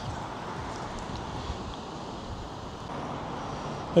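Steady background of road traffic passing along a seafront road, an even noise with no distinct events.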